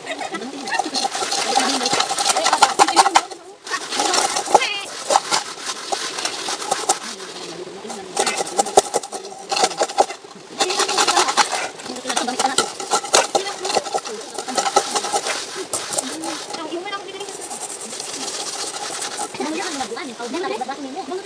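Metal cooking pots being scoured by hand with gritty sand, a dense, rapid scraping that stops briefly a couple of times, with voices chatting alongside.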